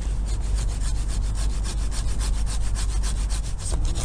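Hand pruning saw rasping through a serviceberry stem in steady, rhythmic strokes, trimming the stub of a removed branch close to the trunk to leave a neat cut.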